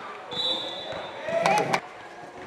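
Basketball bouncing on the court during play, with voices calling out and a louder cluster of sharp sounds about a second and a half in.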